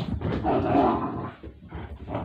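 A puppy scrambling across a carpeted floor after a thrown toy, its paws thudding in quick succession. The noise is loudest in the first second and a half, then eases.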